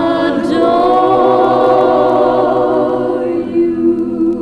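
A female lead voice and a choir holding a long sustained chord with vibrato near the close of a slow ballad; a little past three seconds in, the upper voices drop away and a lower chord is held on.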